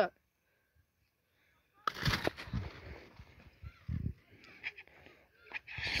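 About two seconds of dead silence, then a sudden start of rustling and crackling with a few dull thumps: handling noise from the camera phone being moved about.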